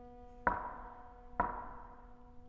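Two sharp percussive knocks about a second apart from a string ensemble, each ringing briefly, while a low held string note sounds quietly beneath.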